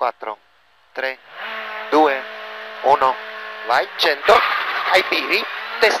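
Škoda rally car pulling away from the stage start and accelerating, its engine and road noise coming in about a second and a half in and building, heard from inside the cockpit.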